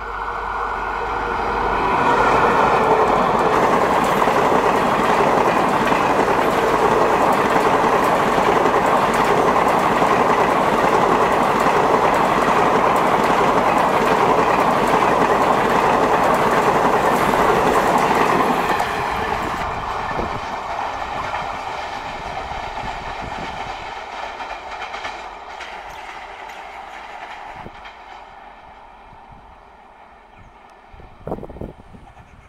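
Electric-locomotive-hauled passenger train passing at speed: the steady noise of coach wheels running over the rails. It swells over the first two seconds, stays loud for about sixteen seconds, then drops off and fades away as the train recedes.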